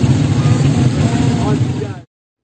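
Busy street noise: traffic running with people's voices in the background.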